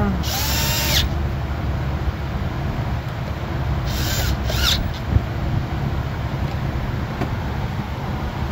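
Snap-on cordless power tool run in three short bursts, its motor whining up and winding down each time, as it tightens a nut on the fuse box terminal. The first burst lasts under a second, and two quick ones follow about four seconds in.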